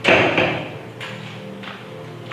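A single loud thump, followed by a couple of much fainter knocks.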